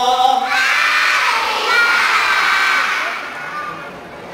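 A crowd of children shouting out together in answer to the singer, a loud massed cry of high voices that fades away near the end.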